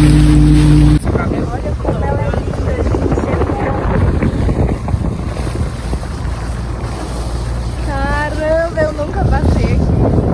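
Motorboat engine running with a steady hum, which stops abruptly about a second in. Then wind buffets the microphone over the rush of water, with voices near the end.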